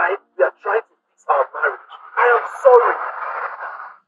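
Speech only: a man's voice heard over a telephone line, thin and narrow like a phone speaker, talking continuously and cutting off suddenly at the end.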